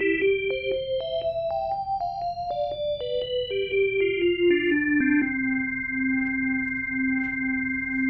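An organ recording, the original version before any WaveNet reconstruction, plays a singer's-exercise run of notes that steps quickly up and back down. It then holds the low note for the last few seconds.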